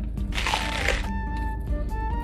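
Background music with a steady bed of sustained notes, and a short crunchy bite into a soft burger bun about half a second in.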